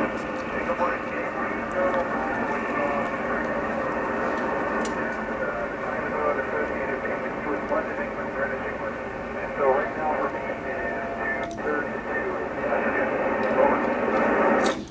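An amateur radio receiver playing the Space Station downlink: a steady, thin hiss, cut off at top and bottom like telephone audio, with a weak voice faintly heard in the noise as the astronaut replies.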